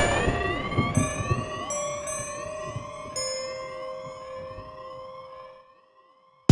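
Logo sting sound effect: a sudden hit, then several tones gliding upward over steady ringing notes, with new high notes coming in about one, two and three seconds in. It all fades away over about five seconds.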